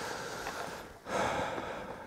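Heavy breathing: two long, noisy breaths in and out, a little over a second apart.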